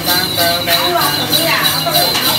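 A Then master's chanting voice over a steady rhythmic jingle of shaken bells, about four shakes a second, with a high ringing tone held underneath.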